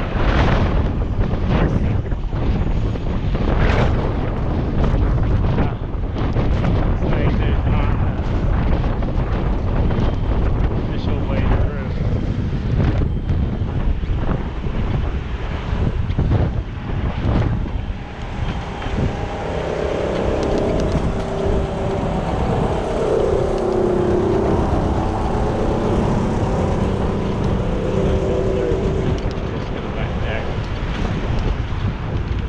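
Wind buffeting the microphone of a bike-mounted action camera while riding, with a gusty rumble through the first half. From a little past halfway, a wavering tone comes through over the wind.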